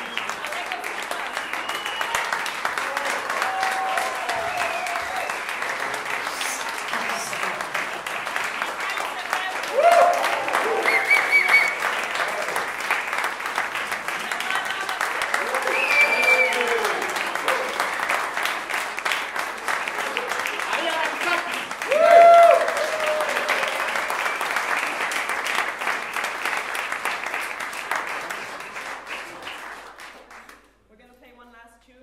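Audience applauding, with a few shouts and whistles rising above the clapping, the loudest shout about two-thirds of the way through. The applause dies away near the end.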